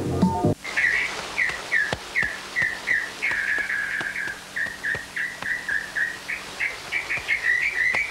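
Background music cuts off about half a second in, and a bird takes over, chirping over and over in short, falling notes, a few a second.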